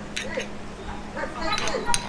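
Metal spoon clinking against a ceramic bowl while breaking the yolks of soft-boiled eggs: a few light clinks, the sharpest near the end.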